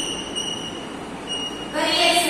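Chalk writing on a blackboard, with a thin, high squeak that comes and goes. A woman's voice starts again near the end.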